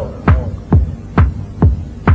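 House music with a bare four-on-the-floor kick drum thumping about twice a second. Each kick drops in pitch, with little else playing over it.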